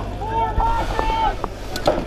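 Shouting voices over wind on the microphone. Near the end a paintball marker starts firing rapid shots, a fast run of sharp cracks.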